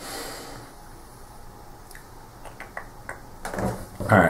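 Faint clicks of cardboard wargame counters being picked up and set down on a mounted map board, a few in the second half, after a brief soft rushing noise at the start.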